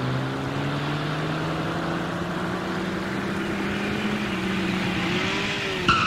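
Small car's engine running as the car drives up and slows, a steady hum whose pitch sinks gradually, with a brief dip and rise near the end.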